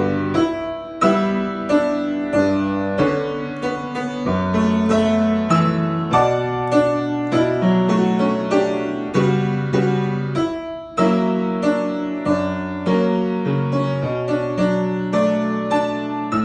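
Grand piano playing a slow, sustained passage of bass notes under a melody, with a short break about eleven seconds in before the playing resumes. The passage is played to show a rhythm that does not feel like a regular 4/4.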